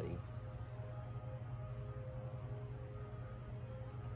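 Insects trilling steadily in a continuous high-pitched tone, with a low steady hum underneath.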